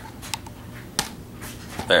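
Two sharp clicks about two-thirds of a second apart: handling noise as the camera is moved and re-aimed.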